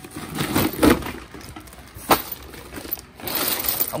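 A woven plastic sack rustling and crinkling as it is pulled open by hand, with small parts shifting and clattering in a plastic tub and one sharp click about two seconds in.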